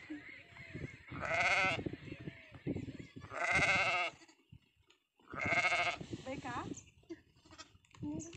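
Sheep and goats bleating: three loud, long, wavering bleats about two seconds apart, with quieter sounds between them.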